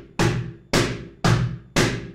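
Cajon struck with the fingertips at the upper corner of its front plate, giving its high slap tone: four single, evenly spaced strokes, about two a second.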